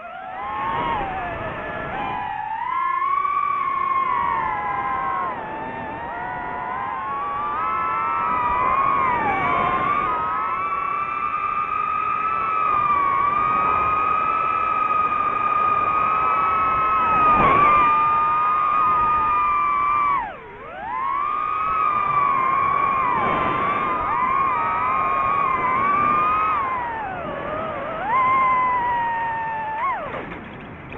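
DJI FPV drone's motors and propellers whining, the pitch bending up and down as the throttle changes; about twenty seconds in it drops sharply for a moment, then climbs back.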